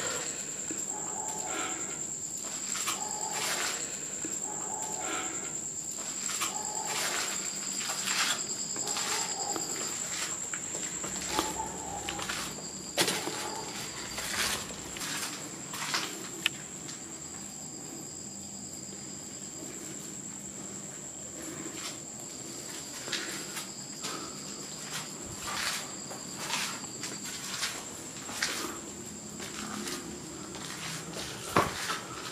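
A cricket's steady high trill runs throughout, with irregular footsteps and scuffs on concrete and grit over it.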